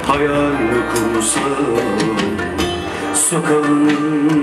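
Live Turkish folk band playing: plucked strings of bağlama and acoustic guitar with keyboard and percussion, a wavering melody carrying through.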